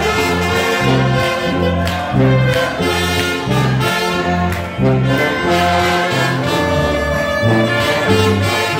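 Up-tempo gospel church music with brass-sounding horns over a steady bass line that steps from note to note about twice a second.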